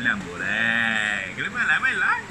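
A man's long, quavering laugh lasting about a second, followed by more choppy laughter and voice.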